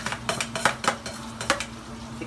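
Metal spatula knocking and scraping against a steel wok while stirring a sauté: irregular sharp clinks, about three or four a second.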